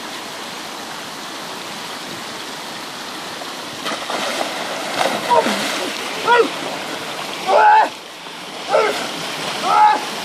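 A steady rushing noise, then about four seconds in a big splash as a person falls into the water off floating boards, with churning water after it. Several loud short yells and gasps follow over the next few seconds.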